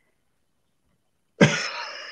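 Dead silence for about a second and a half, then a person coughs: a sharp start trailing off into breathy noise.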